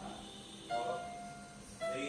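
Electronic keyboard playing two single notes about a second apart, each struck sharply and then held, fading slowly.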